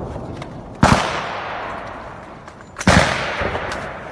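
Two loud gunshots about two seconds apart, each trailing off in a long echo.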